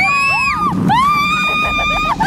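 A young woman's high-pitched scream: a short rising shriek, then a second one held steady for about a second before it breaks off.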